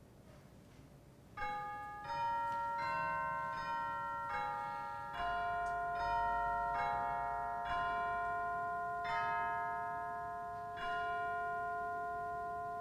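A slow melody of struck, bell-like ringing notes, about a dozen of them starting about a second and a half in, each note sustaining and overlapping the next.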